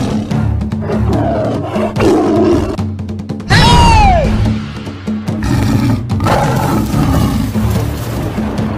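Tiger roar sound effects over dramatic background music: several roars. The loudest comes about three and a half seconds in, with a whistling glide that falls in pitch.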